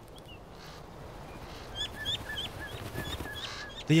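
A bird calling: a quick run of about eight short, high, clipped notes lasting under two seconds, over faint steady background noise.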